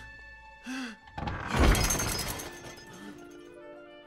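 Crockery crashing and shattering, a loud burst about a second and a half in with a ringing tail, over orchestral film score.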